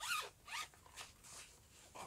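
A zipper on a small fabric pouch pulled in about four short strokes, the first the loudest, fading out by halfway through.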